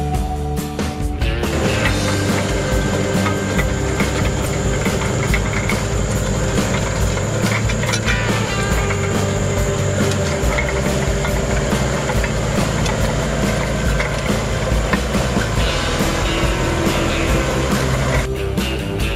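Rock guitar background music. From about a second and a half in, the diesel engine of an LS compact tractor pulling a disc harrow runs steadily under the music, then drops out near the end.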